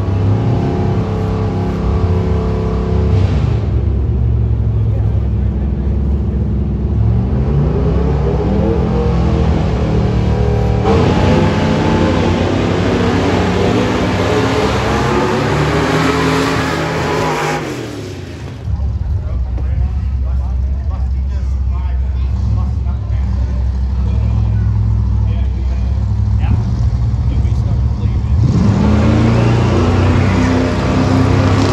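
Drag-race engines, the Chevelle's among them, running loud and revving on a dirt drag strip, their pitch rising in long climbs as the cars accelerate. The engines ease off briefly about two-thirds of the way through, then build again with another rising rev near the end.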